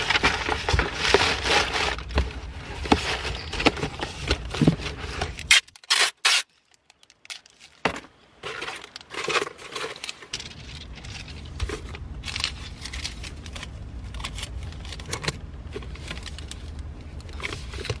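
Cardboard box and paper being handled: irregular scraping, rustling and crinkling as a box is folded and a paper packing slip is laid on it. The noise is busiest in the first five seconds, breaks off for about two seconds of near silence, then goes on more quietly.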